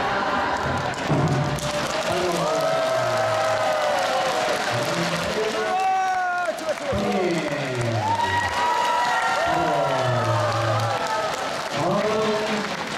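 A man's voice sings in long, drawn-out held notes over audience applause.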